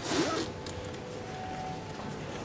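Clothing rustling close to the microphone: a brief scratchy swish of jacket fabric in the first half-second, then a small click.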